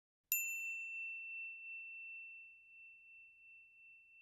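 A single high, bell-like ding about a third of a second in, ringing out and slowly fading away: a reveal chime sound effect.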